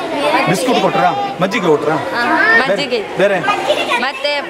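A crowd of children talking at once into a microphone, many high voices overlapping with no pause.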